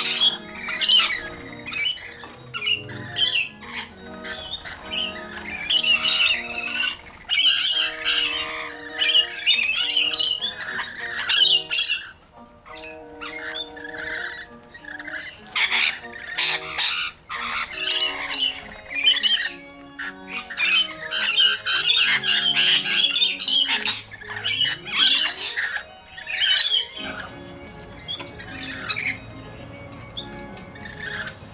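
Rainbow lorikeets screeching in many short, harsh calls, thinning out near the end, over a background music track of held notes.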